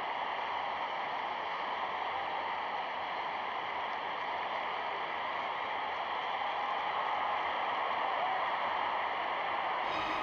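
Steady, even hissing noise on an old, narrow-band film soundtrack, with no distinct cheers, whistles or kicks standing out.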